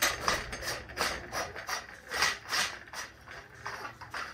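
Anodised-aluminium hookah stem being twisted and worked into place on its glass base: a run of short scraping clicks, about three a second.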